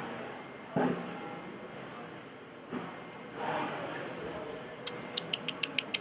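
Faint room noise with a couple of soft, brief sounds, then a quick run of about eight light clicks in just over a second near the end.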